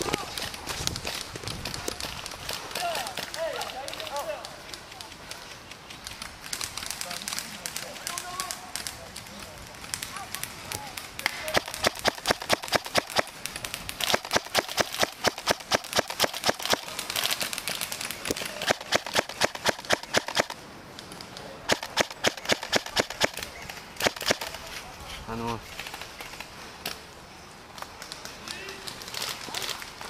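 Airsoft rifle firing several long bursts of rapid, evenly spaced shots, lasting some ten seconds in all. Before the shooting, footsteps crunch through dry leaves.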